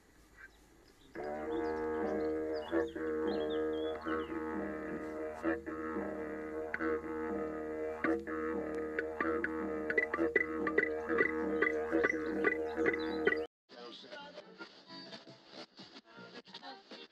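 Didgeridoo (yidaki) drone in the rhythmic old-school style, its tone shifting in a steady pulse, with sharp accents repeating a couple of times a second in the later part. It starts about a second in and stops abruptly near the end.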